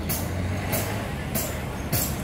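Light, high percussion ticks from a live band, four of them at an even beat of about one every 0.6 s, over a low steady stage hum: a count-in just before the song starts.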